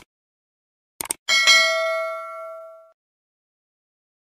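Two quick clicks about a second in, then a bright bell ding that rings out and fades over about a second and a half: a subscribe-button click and notification-bell sound effect.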